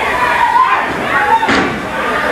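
Arena crowd yelling during a wrestling bout, with a single sharp thud about one and a half seconds in as a wrestler's blow lands on his opponent.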